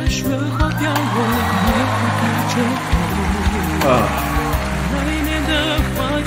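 A male voice singing a slow, wavering melody in Chinese over a Chinese-style instrumental accompaniment with steady low sustained notes and occasional sharp percussive strikes.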